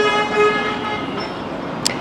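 Vehicle horn sounding one long, steady note that slowly fades away, followed by a brief high click near the end.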